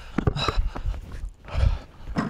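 A basketball being dribbled on a concrete pad: hard bounces, the strongest about one and a half seconds in, with shoe scuffs and heavy breathing close to a clip-on lavalier mic.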